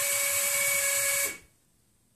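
Electric actuator of a Haswing Comax trolling motor raising the propeller unit: a steady electric motor whine with a gear buzz, cutting off suddenly about a second and a bit in. The propeller is paused while the depth is being adjusted.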